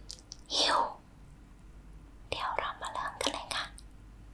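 A woman whispering close to the microphone: one short breathy phrase about half a second in, then a longer run of whispered words in the second half.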